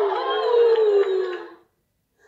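Laughter, drawn out and falling in pitch, which stops about one and a half seconds in.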